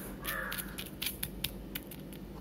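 A metal spoon scraping and ticking on paper as moringa leaf powder and fish-food pellets are mixed: a quick run of sharp ticks. A short harsh call sounds about a quarter second in.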